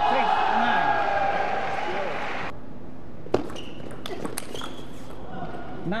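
A drawn-out shout from a table tennis player over crowd noise, cut off abruptly about two and a half seconds in. Then come a few sharp clicks of a table tennis ball on bat and table.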